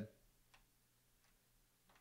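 Near silence: faint room tone with two faint clicks, one about half a second in and one near the end.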